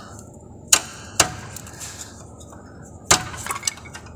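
Metal pry tool being tapped to knock a Proton Wira's driveshaft out of the gearbox: three sharp metallic strikes, the first about a second in and the next half a second later, the third near the end followed by a few lighter taps.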